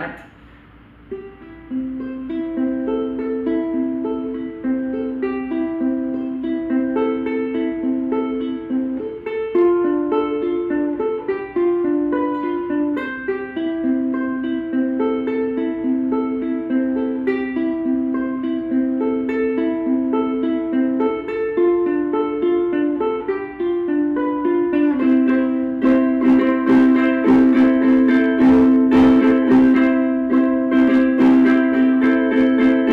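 Vangoa concert ukulele with Aquila strings and a laminate mahogany body, played as a tune of single plucked notes. Near the end it changes to fuller strummed chords.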